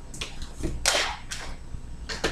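A few short plastic scrapes and knocks from a protein powder tub and its scoop being handled, the loudest about a second in.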